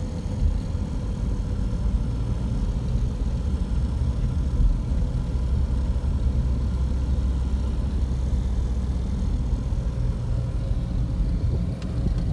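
Steady low rumble of a car being driven along a road, heard from inside the cabin: engine and tyre noise with no sharp events.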